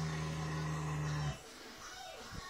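A sleeping horse lying flat out, snoring: one long, low, droning snore that stops suddenly about a second and a half in, then a quiet pause between breaths.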